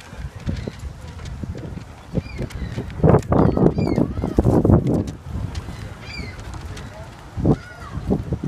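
Gulls calling overhead: several short calls that rise and fall in pitch, repeated through the few seconds, over a louder low rumble that swells in the middle.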